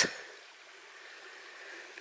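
Shallow stream running over stones, a faint, steady rush of water.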